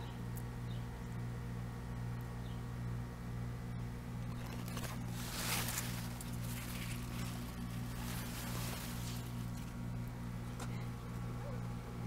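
Leaves rustling as they brush against the handheld camera, a brief swish about five seconds in, over a steady low hum.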